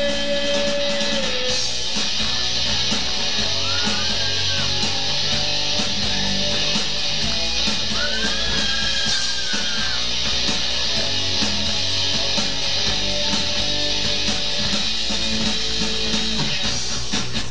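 Live rock band playing an instrumental passage: electric guitars over bass and drums, with high notes sliding up and down about four and eight seconds in.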